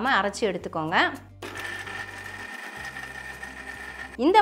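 Electric mixer grinder grinding chopped coconut pieces dry, without water. Its motor starts suddenly about a second and a half in and then runs with a steady whine.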